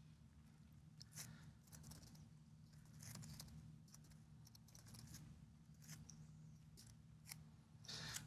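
Near silence: scattered faint computer-keyboard key clicks as a terminal command is typed, over a low steady hum.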